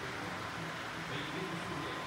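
Robot vacuum cleaner running, a steady whirring with a faint thin high tone held throughout; muffled voices murmur in the background.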